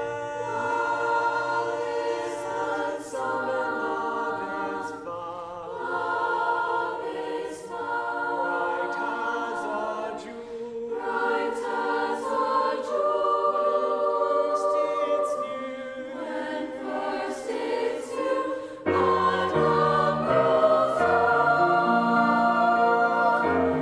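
A mixed-voice high school choir singing sustained phrases. About 19 seconds in, lower notes join and the singing gets fuller and louder.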